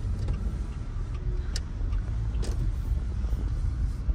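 Low, steady rumble of a car's engine and tyres heard from inside the cabin as the car slows to pull over, with a couple of faint clicks.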